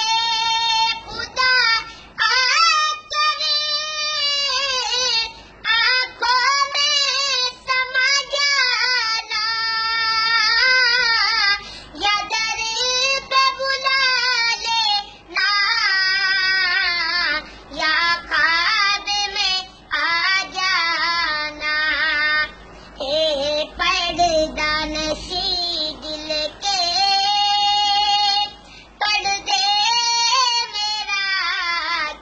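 A young boy singing a naat, an Islamic devotional poem in praise of the Prophet Muhammad, solo and without instruments, in long phrases of held, bending notes with short pauses for breath between them.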